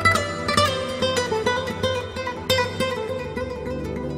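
Background music on a plucked string instrument: picked notes ring out and die away over a steady held tone.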